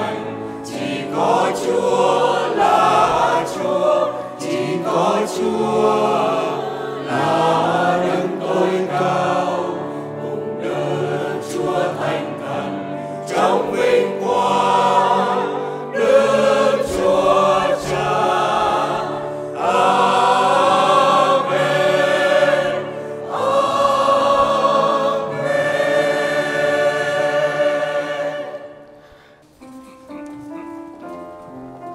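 Church choir of mostly women's voices singing a hymn, ending on a long held final chord near the end.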